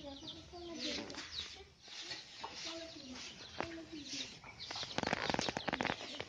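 Hens clucking faintly, with quiet voices in the background. From about five seconds in, a quick run of scraping as shovels push through threshed rice grain on the ground.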